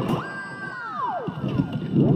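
Electric guitar lead: a high held note that dives steeply down in pitch about halfway through, followed near the end by short notes that swoop up and down.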